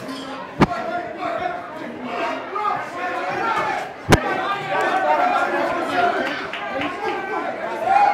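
Two sharp punches from boxing gloves landing, one just after the start and another about four seconds in, over the steady chatter of a crowd in a large hall.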